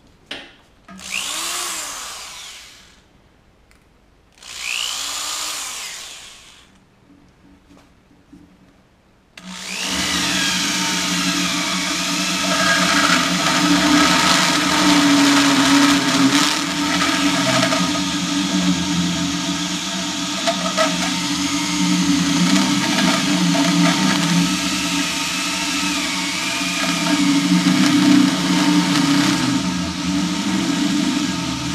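Older corded Skil electric drill with a variable-speed setting, briefly run up twice, its motor pitch rising and falling each time. About nine seconds in it runs steadily as an annular hole cutter bores into a steel square tube, with a grinding cutting noise.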